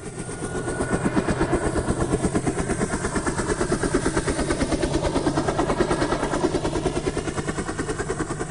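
A steady, rapidly pulsing mechanical noise that fades in over the first second.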